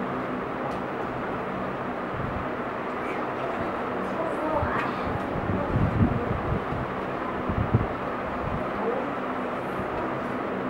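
Steady room noise with a low hum, under a few faint distant voices and a handful of soft low thumps about halfway through.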